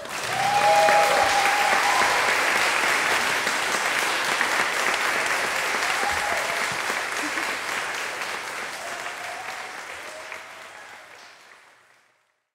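Audience applauding, with a few whoops. The applause starts suddenly and fades out toward the end.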